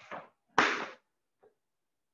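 A single sharp, loud slap-like crack from a karate strike during kata practice, dying away within about half a second, with a few faint rustles of movement before it.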